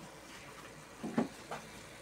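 Diced tomato, onion and chile frying in a pan: a faint, steady sizzle, with two brief soft sounds a little past a second in as a wooden spoon stirs the mixture.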